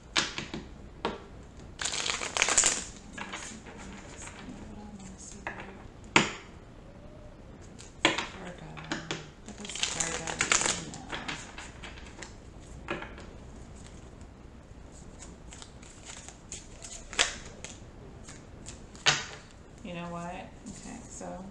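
A deck of tarot cards shuffled by hand, in two bursts of rapid flicking about two seconds in and about ten seconds in. Single sharp taps of cards on a wooden table fall in between and near the end.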